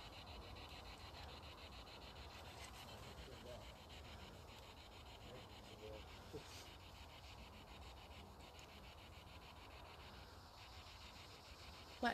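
Near silence, with a faint steady hiss broken by a fine, rapid chopping: an SB7 spirit box sweeping through radio static at low volume. A brief faint tone a little past the middle.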